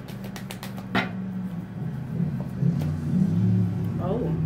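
A deck of tarot cards being shuffled by hand: a quick run of soft clicks, about six or seven a second, ending in a sharper snap about a second in. A low steady hum with a few held pitches runs under it and grows louder.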